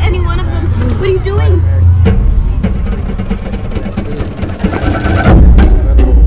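Horror trailer soundtrack: music over a steady low drone, with wavering voices in the first two seconds, then a loud low hit a little after five seconds in that opens into a deeper rumble.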